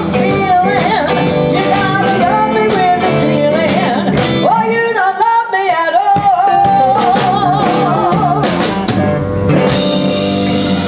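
Live blues band: a woman singing with electric guitars, bass guitar and drum kit. About halfway through, the bass drops out for a couple of seconds under her held, wavering notes, then the full band comes back in.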